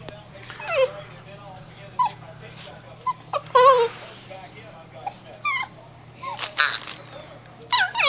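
An eight-week-old German Shorthaired Pointer puppy giving a string of short, high yips and little barks, spaced about a second apart.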